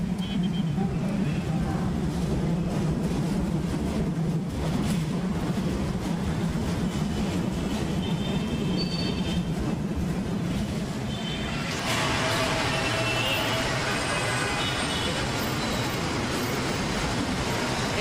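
Busy street traffic noise: a steady low hum of engines and passing vehicles. About twelve seconds in it grows louder and hissier, with some thin high tones in it.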